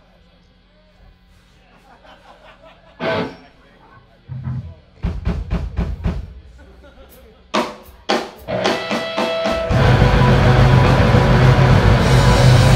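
Live band between songs: low amplifier hum, a short loud burst about three seconds in, then a run of sharp drum hits. About ten seconds in the full band comes in loud with distorted guitar, bass and drums.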